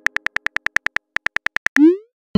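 Simulated phone-keyboard typing clicks, fast and even at about ten a second, followed near the end by a short rising swoosh as the text message is sent.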